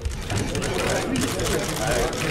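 Press cameras' shutters clicking rapidly and continuously over background chatter in a crowded hall.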